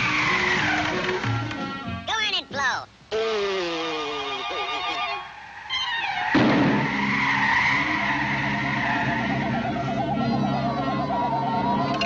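Howling cartoon blizzard wind, its whistling pitch sliding up and down, over orchestral score. The sound thins out briefly about three seconds in, then comes back fuller and louder from about six seconds in.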